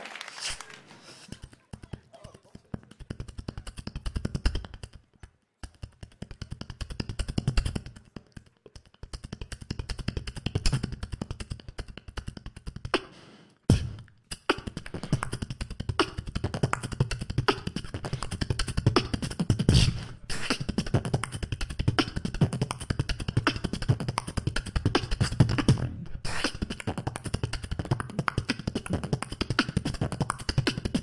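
Solo beatboxing into a handheld microphone over a PA: a continuous rhythmic beat of deep bass sounds and sharp clicking snares and hi-hats, broken by a few brief pauses, the clearest about fourteen seconds in.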